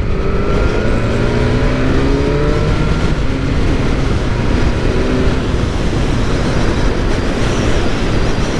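BMW S1000R's inline-four engine under hard acceleration, its note rising for about three seconds, dropping at a quickshifter upshift and rising again. Wind noise on the microphone builds as the speed climbs and dominates the second half.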